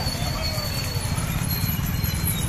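Several small commuter motorcycles running together at low speed, a continuous rough low rumble.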